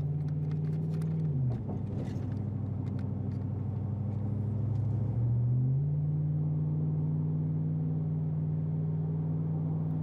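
Car engine and road noise heard from inside the cabin. The engine note drops about a second in as the car slows for a turn, then climbs again around five seconds in as it speeds back up and holds steady.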